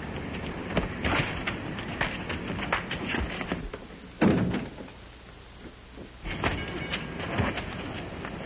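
Film sound effects of a door in an old optical soundtrack: scattered clicks and knocks, and a heavy thump about four seconds in as a door is pushed open, followed by a quieter stretch and more knocks.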